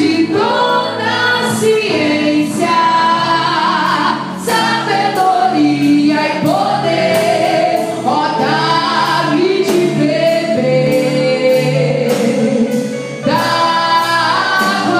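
Live gospel worship song: a woman singing lead into a microphone, backed by electronic keyboard and a drum kit with cymbal strikes about twice a second.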